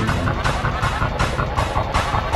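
Several logo soundtracks layered and played at once: a dense, distorted jumble of electronic music with a fast run of short repeated tones.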